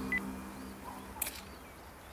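Birds chirping faintly now and then, while sustained background music fades out over the first second and a half. A short electronic beep sounds just after the start, and a sharp click comes about a second in.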